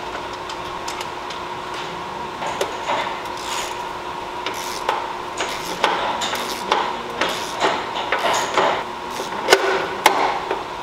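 A hand tool working the bolts of a motorcycle's rear fender struts: irregular metal clicks and short scraping strokes as the hardware is loosened and pulled. The strokes get busier after a couple of seconds, with the sharpest click near the end, over a faint steady hum.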